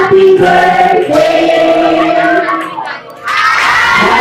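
A party song with singing plays over a crowd of children shouting and singing along. The music drops out briefly about three seconds in, then comes back.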